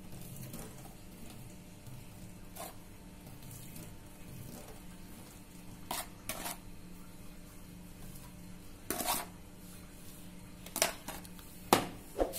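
A brush and a plastic container handled in a stainless steel sink while a cleaning paste is spread: a few scattered light knocks and clicks against the steel over a steady low hum.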